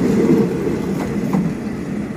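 Passenger coaches of a train rolling past at close range, a steady rumble of wheels on rail that eases slightly as the last coach goes by.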